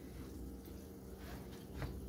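Steady low hum of heating plant running: twin Grundfos Magna D circulator pumps and gas boilers, with a faint tick near the end.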